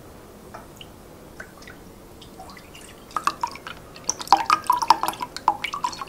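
Soy milk glugging out of a paper carton and splashing into a glass measuring cup, starting about three seconds in after a few light ticks, loudest in the middle of the pour.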